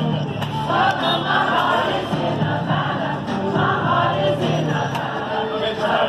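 A choir singing, many voices together.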